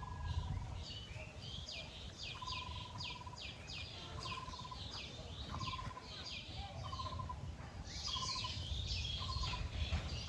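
Birds calling: a rapid run of sharp, high chirps falling in pitch, about two a second, over a lower short trilled note repeated about once a second, with a steady low rumble underneath.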